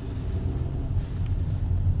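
Car interior noise while driving: a steady low engine and road rumble heard from inside the cabin.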